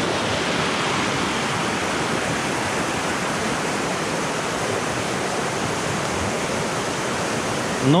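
Muddy river water rushing steadily over rocks, an even, unbroken rush.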